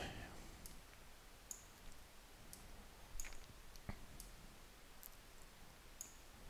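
Faint, scattered computer mouse button clicks, about half a dozen spread over several seconds with quiet between them, as a text box is clicked and dragged into position.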